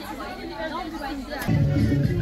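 Chatter of several voices, then about one and a half seconds in, loud music with a strong bass line cuts in suddenly.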